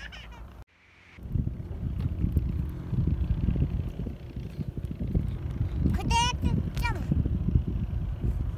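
Wind buffeting the microphone: an irregular, gusty low rumble, with a child's short, high, wavering call about six seconds in.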